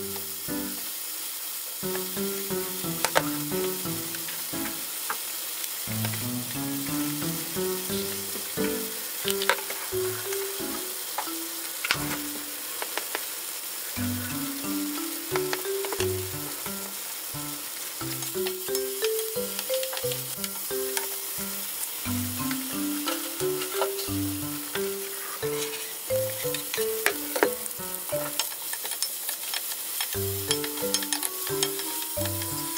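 Cubes of tofu frying in hot sesame oil in a frying pan: a steady sizzle with a few sharp clicks. Light background music with a stepping melody plays over it.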